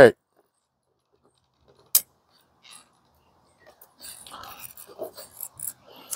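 Caulking gun dispensing glue: one sharp click about two seconds in, then faint, irregular clicks and rustling from the gun's trigger and plunger over the last two seconds.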